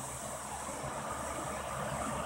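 Electric fan running with a steady whoosh.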